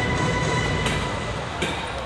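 Parade music playing from a passing float, its held notes dying away about halfway through over a low rumble. Two sharp clicks, one about a second in and one near the end.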